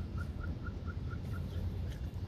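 A bird chirping a rapid series of short, identical high notes, about four a second, that stop about a second and a half in, over a low rumble.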